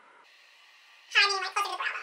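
A woman's voice chattering at an unnaturally high, chipmunk-like pitch: speech played back fast-forwarded, at roughly double the pitch of her normal voice. It starts about a second in, after a near-silent pause.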